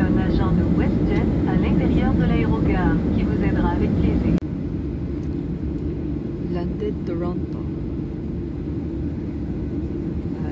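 Steady low rumble of a jet airliner's cabin as the aircraft taxis after landing, with voices over it. The sound drops suddenly about four seconds in.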